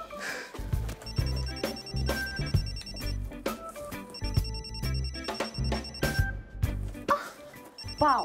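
A ZTE keypad mobile phone ringing with an incoming call: a high pulsed ring from about a second in for two seconds, starting again near the end, over background music with a steady beat.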